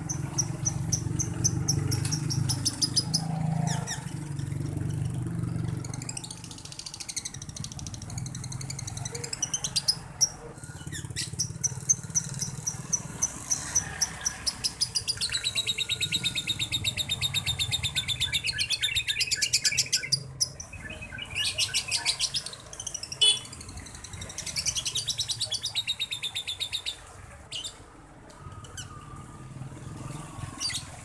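Male Fischer's lovebird singing in long trains of rapid, repeated high chirps, broken by short pauses, with the longest run lasting about five seconds. This is the fast chattering song that lovebird keepers call 'konslet'. A low engine rumble from a passing vehicle lies under the first few seconds.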